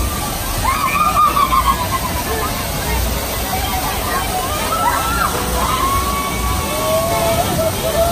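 Rushing, sloshing whitewater of a river-rapids ride churning around a circular raft, with riders' voices calling out over it now and then.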